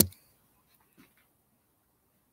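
A single sharp knock right at the start, fading within a fraction of a second, followed by a few faint soft sounds about a second in.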